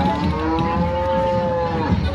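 A head of cattle mooing: one long, drawn-out moo that rises slightly and falls off at the end, over crowd noise.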